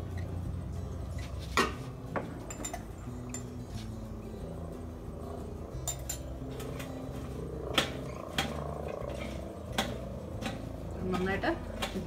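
Stainless steel pots, a steamer tier and a bowl clinking and clattering as vegetables are put into the steamer: about half a dozen sharp clinks spread out over a low steady hum.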